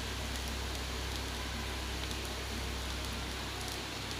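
Masala dosa sizzling steadily on a hot tawa: a soft, even hiss, with a steady low hum underneath.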